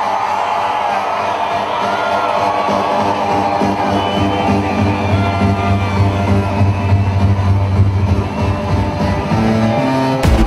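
Electronic dance music in a beatless breakdown: held synth chords over a swelling bass, with a crowd cheering.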